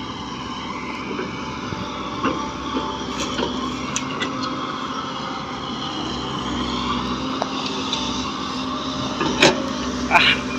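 Komatsu PC130 hydraulic excavator's diesel engine running steadily under load as it digs sand and swings to dump it into a truck, with a few sharp knocks and one louder knock near the end.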